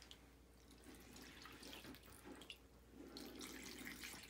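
Faint trickling and splashing of distilled vinegar poured from a plastic gallon jug onto clothes in a plastic tub, the liquid soaking into the fabric.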